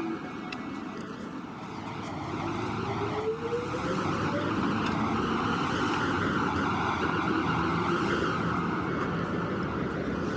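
Town-square traffic noise: a vehicle's engine rises in pitch a few seconds in as it pulls away, then the traffic noise holds steady and somewhat louder.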